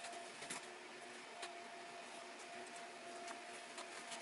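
Faint handling sounds of hand-sewing leather: a few soft ticks and rustles as needle and thread are worked through the hide, over a faint steady hum.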